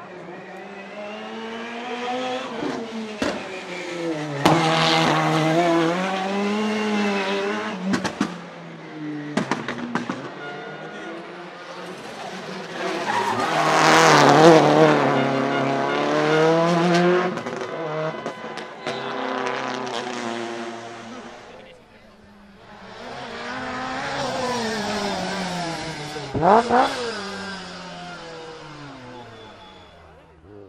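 Rally cars driven hard through corners one after another, engines revving up and down with tyres squealing and a few sharp cracks. The loudest, about halfway, is a Subaru Impreza WRC's turbocharged flat-four held at high revs as it slides with its wheels spinning. Near the end a Lancia 037 revs sharply as it passes.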